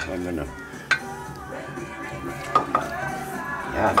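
A metal spoon scraping and clinking against stainless steel pots as raisins are spooned out and stirred into a sauce, with a few sharp clinks.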